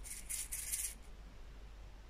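Small square diamond-painting drills, which she takes for resin, rattling and sliding inside a small plastic cup as it is tilted, a short crackly rattle lasting about a second.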